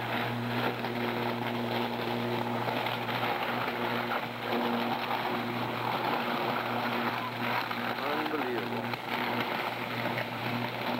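Electrical arc burning on a power line at a utility pole: a steady buzzing hum with a constant crackle, the sound of a line shorting out and burning.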